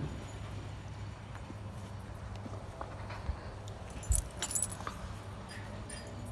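A cluster of light metallic jingles and clicks about four to five seconds in, over a steady low hum.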